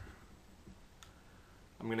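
A single sharp computer mouse click about halfway through, over quiet room tone.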